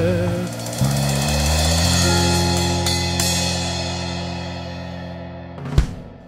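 The end of an acoustic rock song: the last sung note ends about half a second in, then the band holds a final chord with drums and cymbals ringing, slowly fading. A sharp hit comes just before the end.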